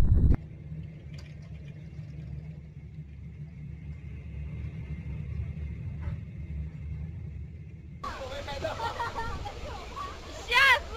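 A low, steady rumble, then voices talking over it from about eight seconds in.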